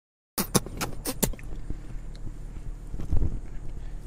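Low, steady rumble of a car heard from inside the cabin. In the first second and a half there is a quick run of five sharp clicks, and a few softer thumps come about three seconds in.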